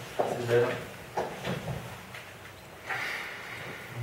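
Indistinct, quiet speech in a room, broken by a few brief knocks of handling.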